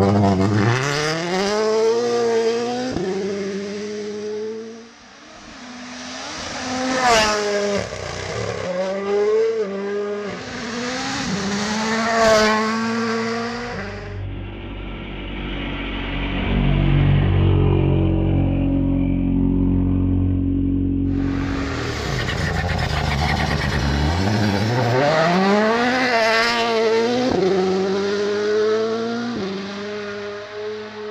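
Toyota GR Yaris Rally1 car's turbocharged 1.6-litre four-cylinder engine driven flat out on gravel: the revs climb hard and drop at each quick upshift, over and over. Two sharp cracks come in the first half. In the middle the engine holds a lower, steadier note before it winds up through the gears again.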